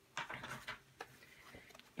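A few faint clicks and taps as a glass pane is worked out of a cheap 11 by 14 picture frame, most of them in the first second.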